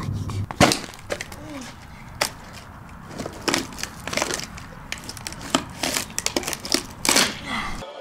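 A sledgehammer wedged inside a carbon-fibre racing helmet being wrenched loose, the broken shell giving a handful of sharp cracks and crunches.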